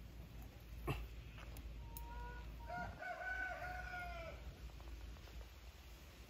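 A rooster crowing once, faintly, starting about two seconds in: a short rising opening and then a long held note that falls away at the end.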